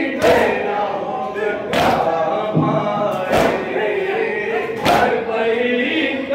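A crowd of men chanting a noha in unison, with loud slaps of hands beating on chests together (matam) about every second and a half, four times.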